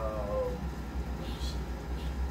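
A short pitched vocal sound, falling in pitch, dying away about half a second in, over a steady low electrical hum.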